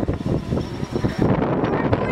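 Wind buffeting the microphone: an uneven, gusty rumble.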